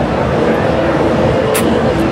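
Loud, steady street noise with the faint babble of background voices, and a short click about one and a half seconds in.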